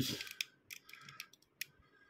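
A few faint, short clicks and light scrapes as a small diecast toy truck with plastic parts is handled and turned in the fingers.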